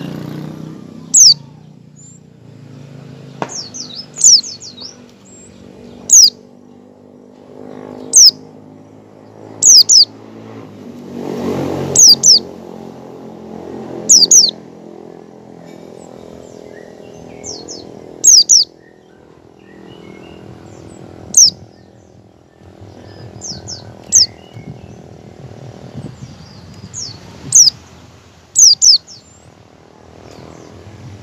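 White-eye (pleci) giving short, sharp, high calls every one to three seconds, some in quick pairs. This is the call keepers call ngecal, played to coax other pleci into singing.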